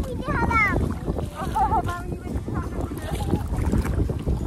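Wind buffeting the microphone in an open kayak on the water, a steady low rumble. High voices call out briefly near the start and again around the middle.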